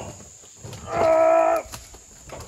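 One long vocal call about a second in: a single held note at a steady pitch that drops away at its end.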